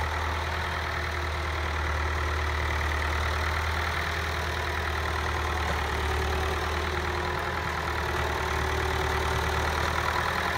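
David Brown 1490 tractor's four-cylinder diesel engine idling steadily, with no change in speed.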